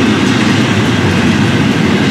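Florida East Coast intermodal freight train passing close by: the steady, loud rolling noise of its freight cars' steel wheels on the rails.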